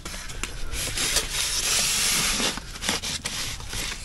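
Foil-faced PIR insulation board (IKO Enertherm) rubbing and scraping as it is pushed down into a tight gap between neighbouring boards and the wall edge: a long hissing scrape about a second in, with a few light knocks.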